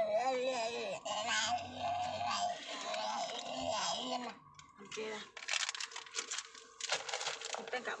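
A plastic sweets packet crinkling and crackling as it is handled, in quick irregular crackles from about five seconds in. Before it comes a child's high voice.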